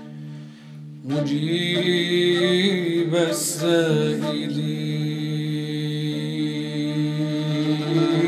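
Arabic nasheed: a steady low drone, joined about a second in by a man's voice chanting a drawn-out, wavering line that settles into long held notes over the drone.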